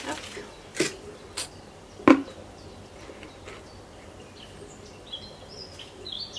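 A few sharp knocks and a heavier thump, the loudest about two seconds in, from black plastic plant pots being handled and set onto a stacked strawberry tower. Birds chirp faintly in the background toward the end.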